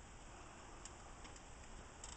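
Near silence: faint background hiss with a couple of faint, brief ticks.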